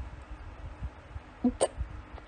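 A man's short, hiccup-like burst of laughter about one and a half seconds in, over low rumbling handling noise from the phone.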